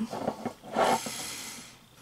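A woman sighing: one breathy exhale about a second long, starting about half a second in and fading out.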